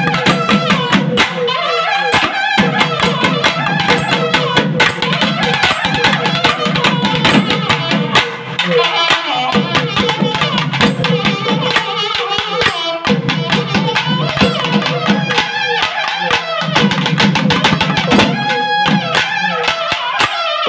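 Naiyandi melam folk music: barrel drums (thavil) beating fast, with a bending melody line over them. The drums drop out briefly a few times.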